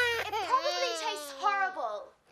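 A baby crying in long wails, the second falling in pitch.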